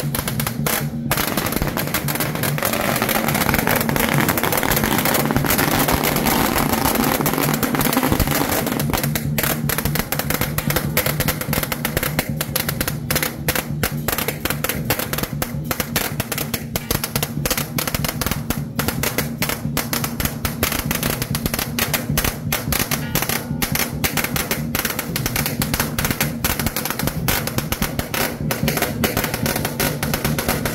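A long string of firecrackers going off in a rapid, continuous crackle, set off to welcome the deities' palanquins, over steady procession music.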